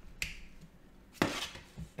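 Sharp clicks from a plastic USB BDM interface pod being handled and set down: a faint click near the start and a louder one a little past halfway.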